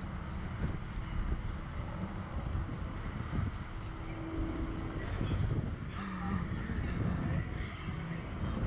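Wind rushing over the onboard camera's microphone as the SlingShot reverse-bungee capsule swings on its cords, a steady low rumble.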